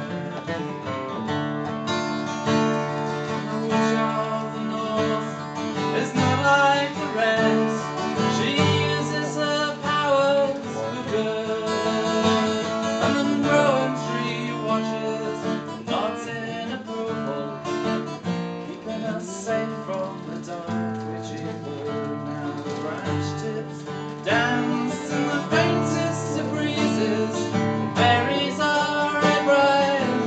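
Acoustic guitar played solo through an instrumental break in a folk song.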